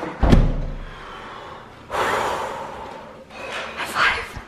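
A door slams shut with a single heavy thud, followed about two seconds in by a long, breathy exhale.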